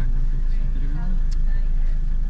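Steady low rumble of a car's engine and road noise inside the cabin while driving, with a few quiet spoken words in the first second.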